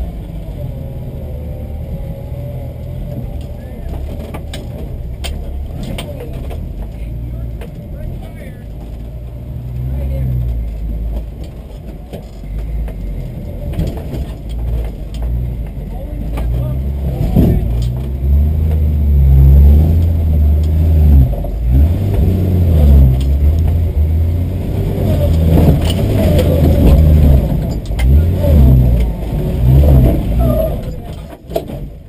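1960 Willys Station Wagon engine pulling at low revs over slickrock, heard from inside the cab, then revving harder and more unevenly from a little past halfway as the wagon works up the rock.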